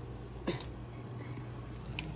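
Battered catfish frying in a deep fryer's oil: a steady sizzle and bubbling over a low electrical hum. A brief falling voice sound comes about half a second in.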